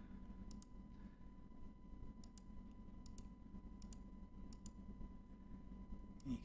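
Computer mouse clicking, about five quick press-and-release double clicks spaced roughly a second apart, faint over a steady low hum and a thin high tone.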